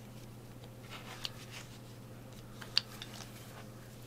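Faint handling of a rotary cutter, acrylic ruler and fabric on a cutting mat: a soft rustle about a second in, then two small clicks about a second and a half apart.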